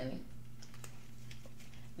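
A few faint, light clicks scattered over a low, steady hum.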